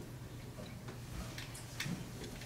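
A few faint, irregular footsteps on a stage floor over a steady low hum.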